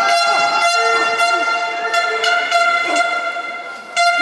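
A handheld air horn blown by a spectator, one long steady note held for several seconds, with a second, lower note sounding briefly in the middle. It drops away just before the end, with sharp knocks or claps over it.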